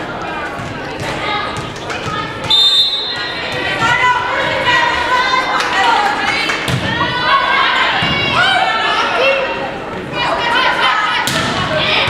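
Gym volleyball rally: players and spectators calling and shouting in a large, echoing hall, with the thuds of the ball being struck. A short, high referee's whistle blast sounds about two and a half seconds in.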